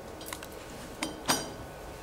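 Two short, sharp clinks of a small hard object, about a third of a second apart, the second louder and ringing briefly, after a couple of faint ticks.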